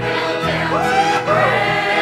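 Small mixed church choir of men and women singing a gospel hymn together over steady low accompaniment notes.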